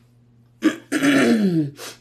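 A woman clearing her throat: a sharp start a little over half a second in, a falling, rasping voiced sound, then a short second burst just before the end.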